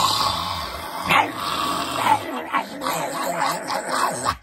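Growling and snarling from people mimicking animals: a loud, harsh, rasping noise that starts suddenly and carries on for about four seconds.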